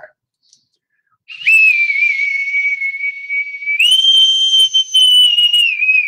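Boatswain's call (bosun's pipe) piped as a salute: a shrill note held for about two seconds, stepping up to a higher note for about two seconds and dropping back near the end.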